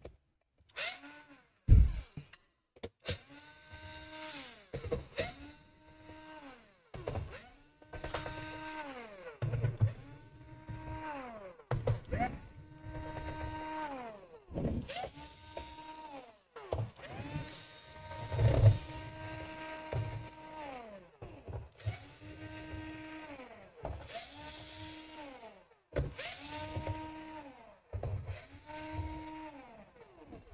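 Cordless electric screwdriver removing screws from a laptop's plastic bottom cover. Its motor whirs up to speed, holds, and winds down again in about a dozen short runs, one of them longer, with sharp clicks in between.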